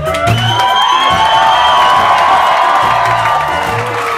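Live ska band with horns, guitar, organ, bass and drums playing, a long note rising at the start and then held for about three seconds, with the crowd cheering.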